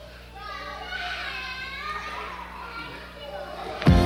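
Children's voices chattering and calling, like kids playing, over a faint held low note, as a song intro; near the end the full band music comes in suddenly and much louder.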